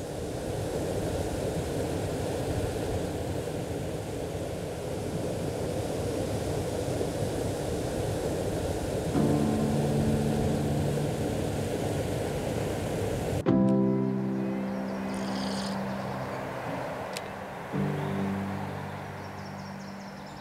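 River water rushing and splashing down a rocky cascade. About nine seconds in, soft background music comes in over it, and a little past halfway the water sound cuts off suddenly, leaving the music alone.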